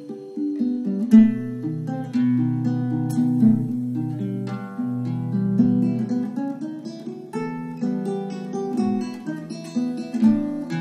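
Nylon-string classical guitar playing a waltz fingerstyle: plucked melody notes over bass notes, each ringing and fading.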